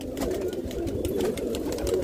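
Domestic pigeons cooing in a loft, a low, steady, wavering sound.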